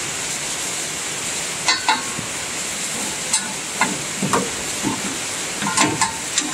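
Scattered light metal clinks and knocks of hand work on a John Deere header's hydraulic cylinder and pin, about six in all, over a steady hiss.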